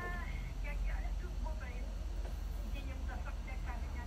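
Faint, thin-sounding speech of a caller coming through a telephone line, over a steady low hum.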